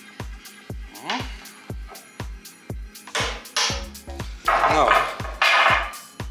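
Background music with a steady beat of about two kicks a second. Over it come several loud, rough scraping bursts, the last two the loudest, as a thick hemp rope is forced through a tight plastic lamp-holder tube.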